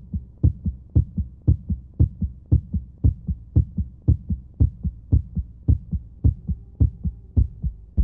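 Heartbeat sound effect: a steady double thump, a strong beat followed by a softer one, about two beats a second. A faint steady tone comes in near the end.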